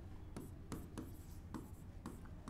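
Faint scratching and tapping of a stylus writing on the glass of an interactive display, in a few short strokes, over a steady low hum.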